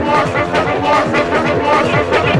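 Fast electronic tekno from a DJ set, driven by a rapid repeating run of falling bass notes, with voices mixed in over the music.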